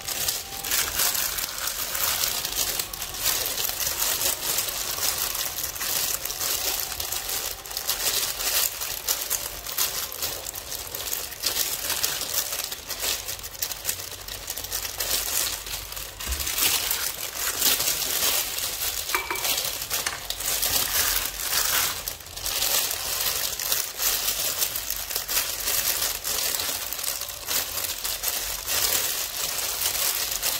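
Steady crinkling and rustling with many small clicks as ground pork and shiitake mushroom filling is mixed and packed by hand into rings of bitter melon. A thin plastic food glove is handled and crinkles near the end.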